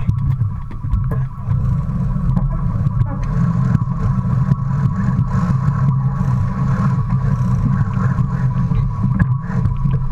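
Wind buffeting the microphone of a camera mounted on a sailing yacht under way, a loud steady rumble, with water rushing past the hull. Scattered short clicks and a faint steady hum sit above it.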